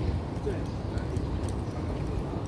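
Outdoor ambience: a steady low rumble on the microphone, with faint footsteps on paving and faint distant voices.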